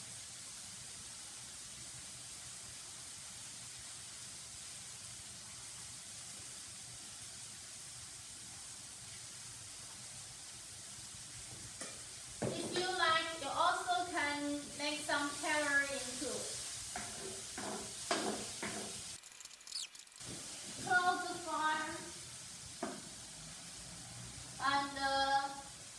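Tomato and scrambled egg frying in a pan, a steady sizzle. A woman's voice comes in about halfway through and again near the end, with a few light clicks between.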